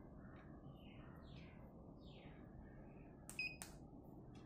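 A short electronic beep framed by two sharp clicks about three seconds in, as an Xiaomi electric scooter is powered on and its dashboard lights up. Underneath is a low steady hum.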